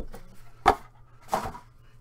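Two sharp clacks about two-thirds of a second apart: hard plastic card cases being set down on a tabletop.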